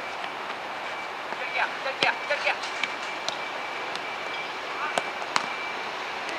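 Futsal ball being kicked on artificial turf: sharp strikes about two seconds in and twice close together near the end, with short shouts from players over a steady background noise.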